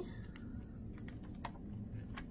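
Quiet room tone with a few faint, scattered clicks and light rustles from a picture book being handled, as its page is taken to be turned.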